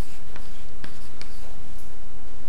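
A few light, sharp clicks or taps, about four in two seconds, over a steady background hiss.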